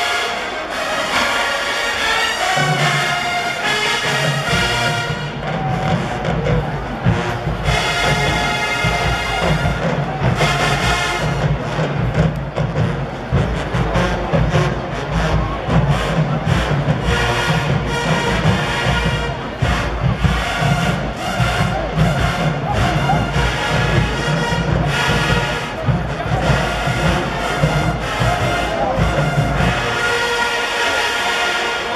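A large HBCU-style marching band playing loud brass music: massed trumpets, trombones and sousaphones over drums. The deep bass comes in a couple of seconds in, and a steady drum beat drives the rest.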